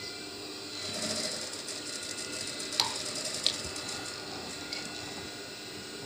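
Industrial lockstitch sewing machine stitching the front placket of a shirt, running in a short burst about a second in, with two sharp clicks later, over the steady hum of its motor.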